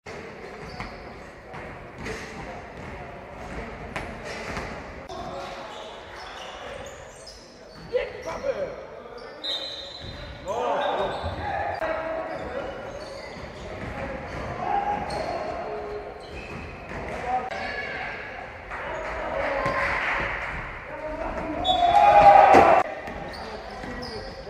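Live basketball game sound in an echoing sports hall: a ball bouncing on the wooden court and players' voices, with the loudest burst of voices near the end.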